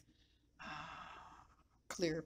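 A woman's soft, breathy sigh lasting about a second, starting about half a second in.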